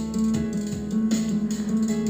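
Instrumental background music with held, steady notes.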